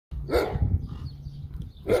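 A dog barks once, a short, loud bark about a third of a second in, over a low steady rumble.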